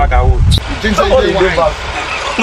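A man talking, his voice rising and falling in short phrases, over a steady low rumble.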